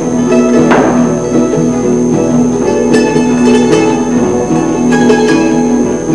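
Acoustic guitars and other plucked string instruments playing a live instrumental passage, picking a melody of held notes over a steady accompaniment.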